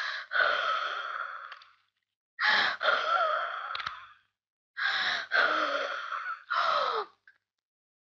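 A woman gasping and wheezing for breath in a series of loud, strained breaths, each a second or two long with short pauses between, as in an asthma attack.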